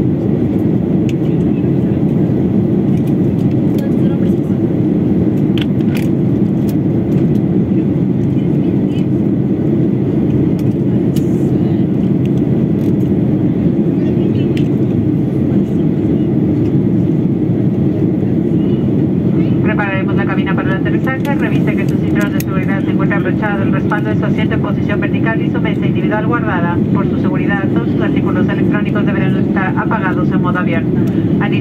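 Steady roar of a Boeing 737 airliner's engines and airflow heard inside the passenger cabin. About twenty seconds in, a crew announcement over the cabin speakers starts over the noise.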